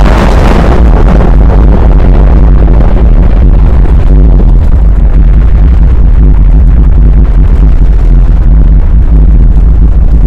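Very loud Space Shuttle liftoff roar from its rocket engines and solid rocket boosters. It crackles sharply in the first second, then settles into a dense, steady low rumble, mixed with electronic music.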